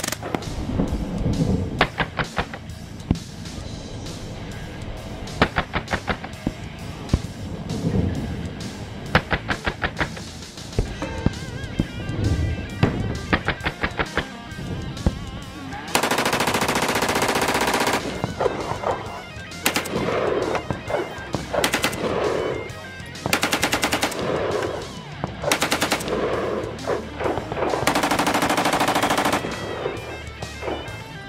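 Gunfire from several firearms: single shots and quick strings of shots, with two long bursts of fully automatic fire, each about two seconds, around the middle and near the end.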